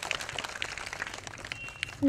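Handheld microphone handling noise: scattered small clicks and rustle over a faint background hum as the microphone passes from hand to hand. A brief high tone sounds about one and a half seconds in.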